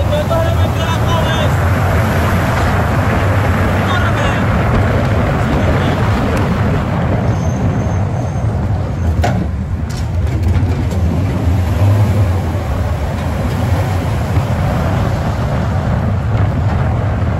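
Steady, loud engine and road noise of a moving police patrol car, heard from on board the car as it drives along the street.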